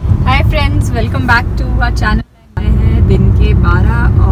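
A woman talking inside a car cabin over the car's steady low rumble of engine and road noise while driving. Both cut out together for a moment about two seconds in.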